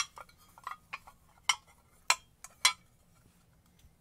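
Short hard clinks and knocks of a galvanized pipe tee and a red plastic part being handled: a sharp click at the start, a few faint taps, then three louder clinks between about one and a half and three seconds in.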